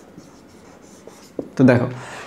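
Marker pen writing on a whiteboard: quiet scratching strokes with a few light ticks as the pen meets the board.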